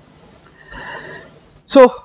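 A man clearing his throat behind his hand: a short, faint, rough breathy noise about halfway through, followed near the end by him saying "So".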